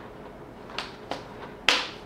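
Pieces of a cross-stitch frame stand being pushed together: a couple of light clicks, then one sharp snap near the end as an elbow joint seats.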